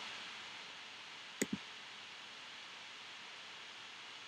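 Faint steady background hiss with two quick clicks close together about a second and a half in.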